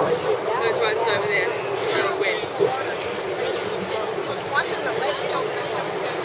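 Several people talking indistinctly over a steady background noise.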